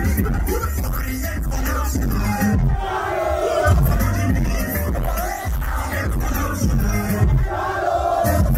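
Live concert music played loud through a PA system, with a strong bass beat, and a crowd shouting along.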